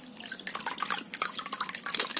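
Water sloshing and splashing in a plastic basin as a small plastic toy bus is swished and rubbed clean by a gloved hand, with irregular little splashes and drips.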